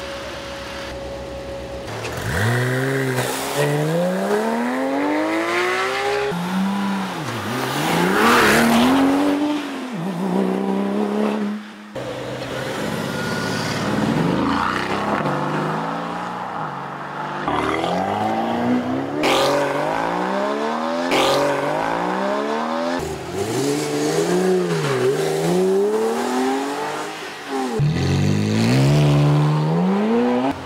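Sports car engines accelerating hard through the gears in several separate runs, each rising in pitch and dropping at the upshifts. A steady idle comes first, before the first run-up about two seconds in.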